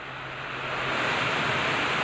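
Muddy runoff water rushing along a narrow passage beside a wall. It is a steady rushing noise that swells louder over the second half.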